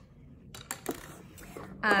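A few light clicks and taps as charcoal pencils and hard plastic pencil cases are handled on a tabletop.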